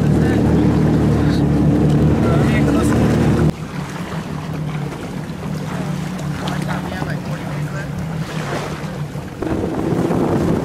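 A watercraft engine runs steadily with a low drone. About three and a half seconds in the sound drops abruptly to wind buffeting the microphone over a quieter low engine hum, and the engine sound comes up louder again near the end.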